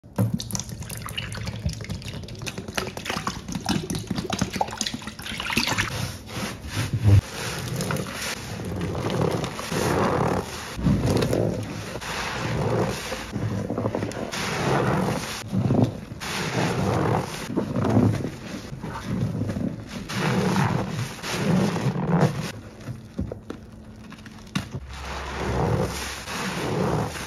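Gloved hands squeezing and wringing soap-soaked sponges in a sink full of thick suds: wet squelching and sloshing in repeated squeezes, about one a second.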